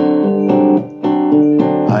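Acoustic guitar playing chords, each ringing about half a second, with a short drop in loudness just before the middle. A singing voice comes in at the very end.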